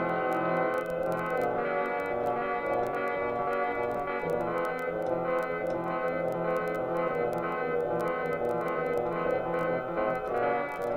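A Casio CTK-3000 keyboard playing a low-fidelity 8 kHz, 8-bit user sample under long reverb, with several sustained notes overlapping into a dense, dull chord. Light clicks come through where the overlapping samples collide, which is this keyboard's known glitch.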